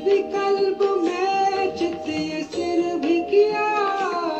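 Recorded Indian devotional song: a high voice sings an ornamented melody over instrumental backing, sliding down in pitch near the end.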